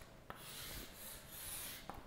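Chalk writing on a chalkboard: faint scratching strokes, with a couple of light taps.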